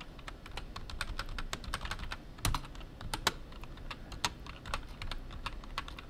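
Typing on a computer keyboard: a run of irregular keystroke clicks, with a couple of louder key presses about two and a half and three seconds in.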